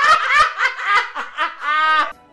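A man laughing hard in quick repeated bursts, ending in one long high-pitched squeal.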